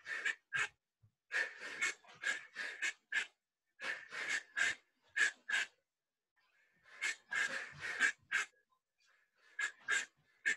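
A person's sharp, hissing breath exhales in quick runs of three to five, breathing out with each punch of a shadowboxing combination, with a pause of about a second near the middle.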